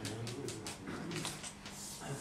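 Chalk on a blackboard: a run of short taps and scratches as letters are written, then longer scraping strokes near the end as lines are drawn around the equations.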